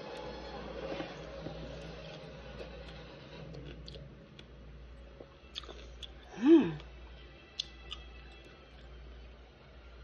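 A person chewing a bite of pickle coated in sour liquid candy, with faint scattered mouth clicks. Past the middle comes one short, loud vocal exclamation that rises then falls in pitch, a reaction to the sourness.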